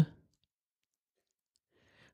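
Near silence in a pause between spoken phrases: the tail of a word at the very start, then nothing, with a faint breath just before speech resumes.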